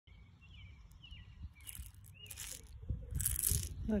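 Turtle-shell rattle shaken three times, each shake a short rattling burst, louder each time. Birds chirp faintly in the first couple of seconds.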